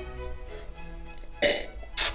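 Soft background string music, then about one and a half seconds in a short, loud slurp as a mouthful of red wine is drawn in with air to taste it; a second slurp begins right at the end.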